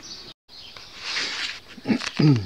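A man's breathy inhale about halfway through, leading into a throat clearing that starts at the very end; a brief dropout near the start marks an edit.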